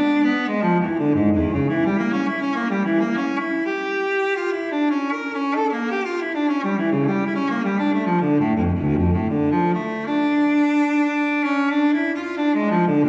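Instrumental music played by low bowed strings, cello and double bass, in slow sustained notes.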